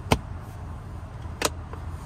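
Two sharp plastic clicks from a car's rear-seat fold-down centre armrest as its cupholder and lid are snapped shut. The first click is the louder, and the second follows about a second and a half later.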